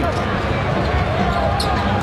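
Basketball being dribbled on a hardwood court, over the steady background noise of an arena crowd.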